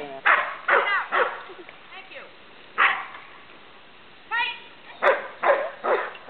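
A dog barking in short bursts at irregular intervals, several barks in quick succession near the start and again near the end.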